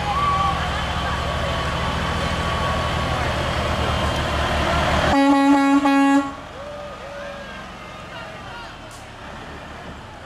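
Diesel engine of a semi-truck tractor running close by as it rolls past, then a single blast of its air horn about five seconds in, lasting about a second and the loudest sound here. After the horn the engine sound falls away and quieter crowd voices remain.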